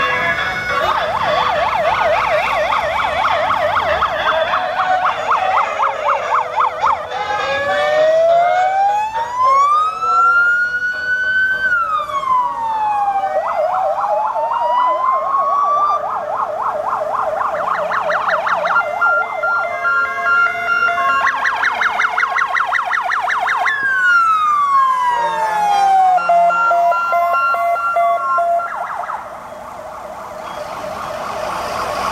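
Emergency-vehicle sirens from a passing column of fire engines and an ambulance, overlapping and changing pattern: a rapid yelp, slow wails that rise and fall, and near the end a pulsing two-tone.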